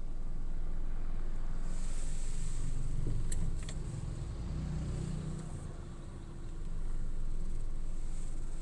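Car engine and road rumble heard from inside the cabin of a car driving in traffic: a steady low drone, quieter for a few seconds in the middle, with two faint clicks a little after three seconds in.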